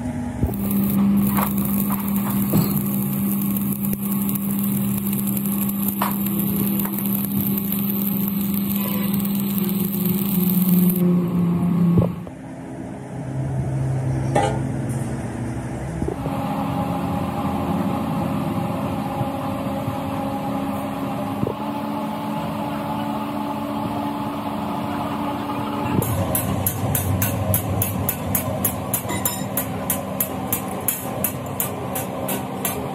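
Stick arc welding on steel, the arc crackling over a steady hum, for about the first ten seconds. A steadier workshop machine hum follows. Rapid, evenly spaced hammer blows on sheet steel, several a second, start about four seconds before the end.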